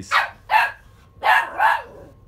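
Boxer dog barking, four short barks in quick succession.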